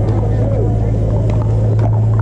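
Pickleball paddles hitting a hard plastic ball: scattered sharp pops from the rallies, over a loud steady low hum and faint distant voices.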